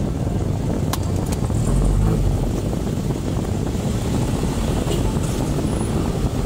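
Street traffic heard from inside a car: motorcycle and car engines running at an intersection, with a swell in engine noise about two seconds in as vehicles ahead pull away.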